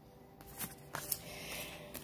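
Oracle cards being shuffled by hand, quiet papery rustling with a few soft clicks, growing a little near the end. Faint background music plays underneath.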